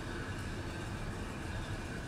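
A steady low rumble with an even hiss above it, no distinct sounds standing out.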